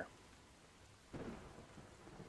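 Near silence: faint room tone, with a soft rush of noise starting about a second in.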